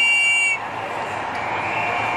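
A whistle blown in a short blip and then held for about half a second: a shrill tone of two close pitches over the steady noise of a crowd.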